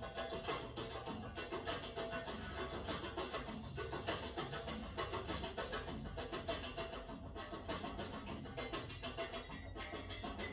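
Music with a steady beat, played for the dance.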